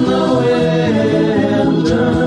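A 1970 psychedelic rock recording: several voices singing together in sustained harmony over the band, with a steady beat.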